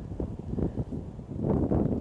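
Horses' hooves thudding irregularly on a sand arena as horses canter over and land from a low water jump, with wind on the microphone.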